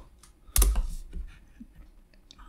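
Computer keyboard keystrokes: one sharp, loud key click about half a second in, followed by a few fainter taps.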